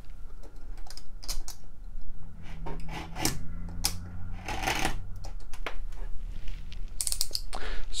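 A sharp knife blade trimming the overhanging end of iron-on wood veneer edge banding flush with a plywood shelf: a run of small clicks and scrapes, with a longer scrape about four and a half seconds in and another near the end.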